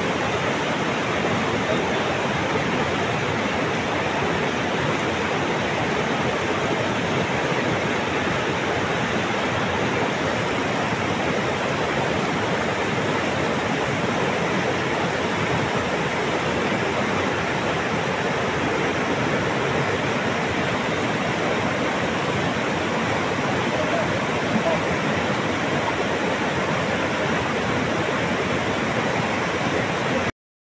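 Steady rushing of a hill stream in spate, fast floodwater running without let-up.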